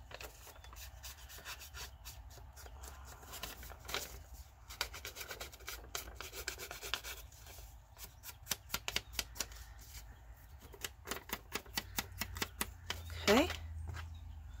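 Small ink dauber dabbed and rubbed along the edges of a folded book-page paper pocket: a run of quick, soft scuffing taps of foam on paper, thickest from about eight to eleven seconds in.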